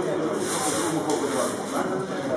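Indistinct overlapping voices of several people echoing in a large hall, with a brief rustling hiss of clothing brushing past the microphone about half a second in.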